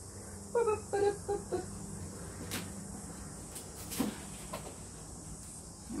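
A brief murmur from a person, then a few light knocks and clicks as objects and a board are handled, over a steady low hum.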